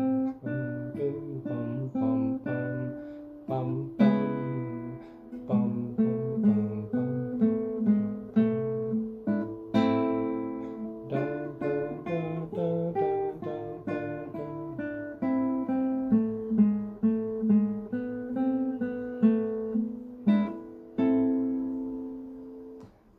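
Nylon-string classical guitar playing a slow duet part in three-four time, plucked melody notes over bass notes, each note ringing on.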